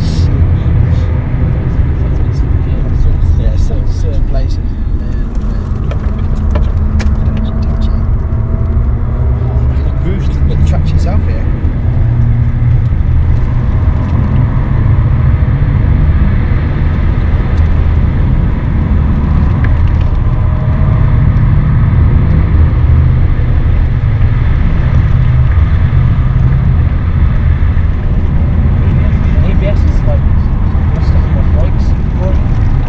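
BMW 530d's straight-six diesel engine and road noise at speed, heard inside the cabin: a loud, steady drone whose pitch rises and falls through the first half, then holds steadier.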